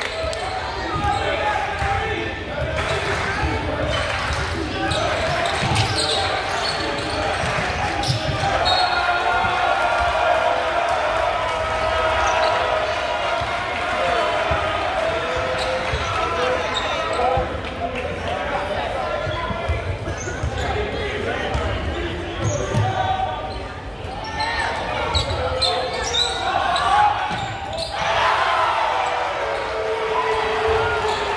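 A basketball being dribbled on a gym floor during play, its low bounces repeating under the talk and shouts of spectators in a large gym.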